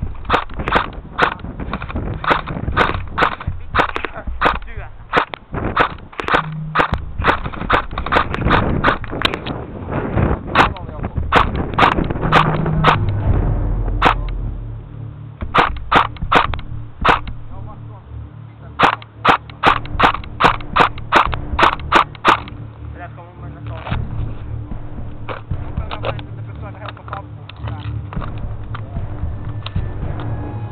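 Airsoft electric rifle firing shot after shot, several a second in quick runs, for about twenty seconds, then only occasional shots toward the end.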